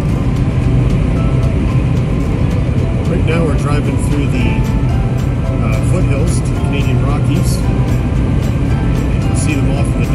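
Steady road and engine noise inside a Jeep cruising at highway speed, a constant low drone under tyre hiss, with music and indistinct voices mixed in underneath.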